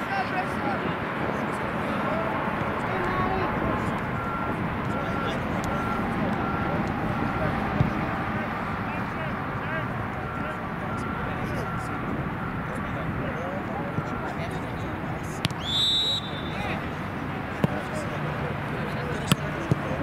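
Open-air soccer field with indistinct voices from the sidelines, and a referee's pea whistle blown once, briefly, about sixteen seconds in, signalling the free kick to be taken.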